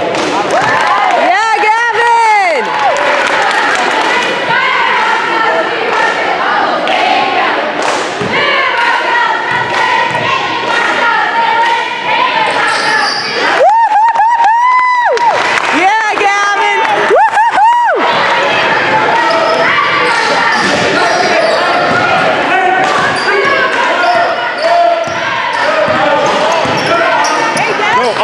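A basketball being dribbled and bouncing on a hardwood gym floor, with spectators' voices and chatter echoing in the hall throughout. A few longer squealing tones stand out about 2 seconds in and again between about 13 and 18 seconds.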